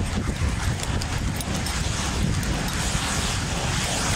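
Wind rushing over a handheld phone's microphone, a steady noise with a heavy low rumble.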